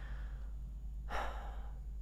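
A woman's audible breath, one soft intake of air about a second in, taken in a pause between phrases, over a steady low hum.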